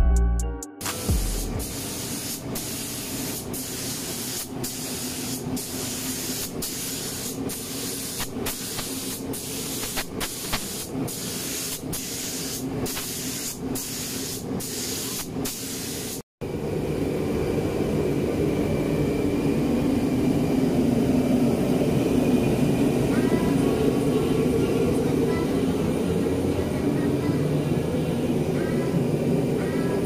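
Compressed-air spray gun hissing steadily as it sprays coating onto the underside of a Nissan 180SX body shell. Sharp ticks come about once a second in the first half, then a short break, and after it the hiss is louder and steadier.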